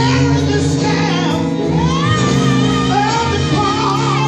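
A man singing into a microphone over live band accompaniment of sustained chords, his voice gliding between held notes, with a woman's voice singing along.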